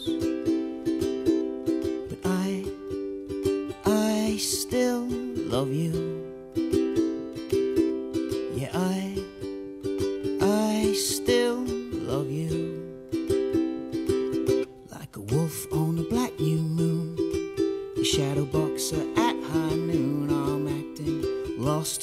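A ukulele strummed in a steady rhythm, with a man singing over it in a solo live acoustic performance.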